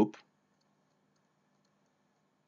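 The last syllable of a spoken word, then near silence with a faint low hum of room tone.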